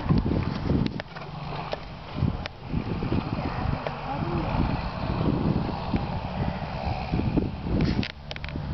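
Wind buffeting the microphone in uneven low rumbles, over horses trotting on a sand track, with a few sharp clicks and indistinct voices.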